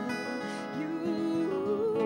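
Two acoustic guitars strumming and picking together, with a long sung note that starts under a second in, steps up in pitch about halfway through and is held to the end.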